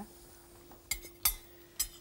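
Metal utensils clinking against porcelain plates: three sharp clinks, one about a second in, one shortly after, and one near the end.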